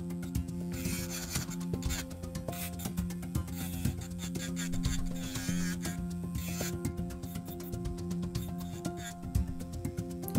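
Electric nail file (e-file) bit grinding at the edge of a lifted acrylic nail in short, intermittent scratchy touches, over background music.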